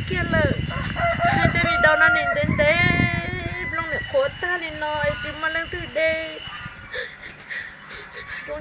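An older woman crying as she talks, her voice breaking into long, wavering wails and sobbing lines that trail off quieter near the end.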